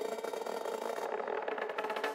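Electronic dance music from a DJ mix in a quieter, stripped-down passage with no bass. About halfway through, the highest frequencies drop out, as when a mixer filter is swept, before the full sound comes back just after.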